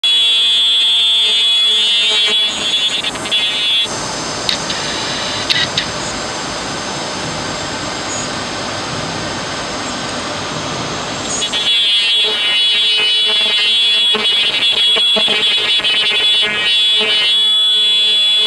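Ultrasonic glove-making machine running: a loud, high-pitched whine with a fast repeating clatter. For several seconds in the middle this changes to a steady hiss, then the whine and clatter return.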